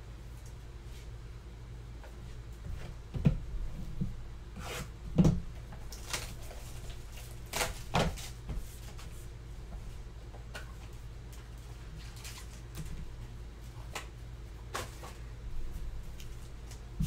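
Trading cards and hard plastic card holders being handled on a tabletop: scattered taps, knocks and rustles, loudest about three and five seconds in, over a steady low hum.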